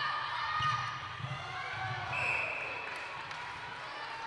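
Indoor netball court sound: crowd murmur in a large hall and soft low thuds on the court floor, then a short, steady umpire's whistle about two seconds in, signalling the centre pass.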